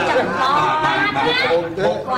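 Speech: people talking, several voices at once.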